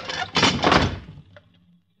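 A garage door slamming shut, a radio-drama sound effect: one loud crash lasting under a second that trails off, followed by a couple of faint clicks.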